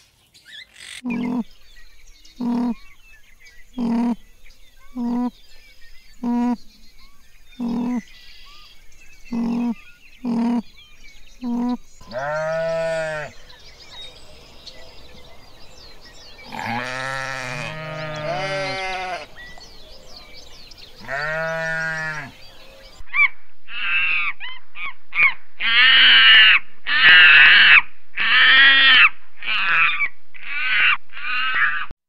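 Sheep bleating: several long, wavering bleats through the middle, two of them overlapping. Before them come about ten short calls about a second and a quarter apart, and near the end, after a cut, a run of quick high-pitched calls.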